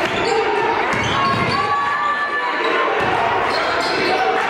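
Basketball being dribbled on a hardwood gym floor, with indistinct voices from players and spectators in the hall.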